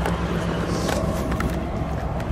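1959 Ford Fairlane 500 Galaxie Skyliner's 332 V8 idling steadily, with a few light knocks from the camera being handled as it swings.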